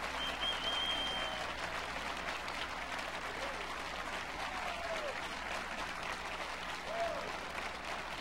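Large concert audience applauding steadily, with a few short voices calling out above the clapping.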